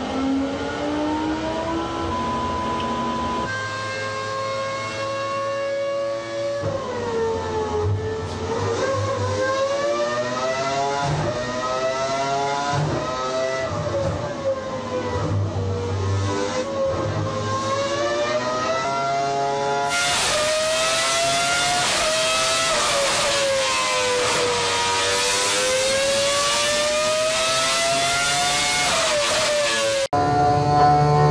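Renault Formula One racing engine running on a dynamometer test bench, its revs rising and falling again and again, a few seconds at a time.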